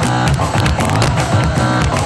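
Loud live salegy band music with a driving, evenly pulsing bass beat.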